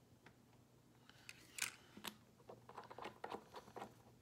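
Faint clicks and light scraping from handling a nail polish bottle and its brush cap, with a sharper click about a second and a half in.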